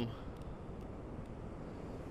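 Steady low rumble of wind and distant ocean surf.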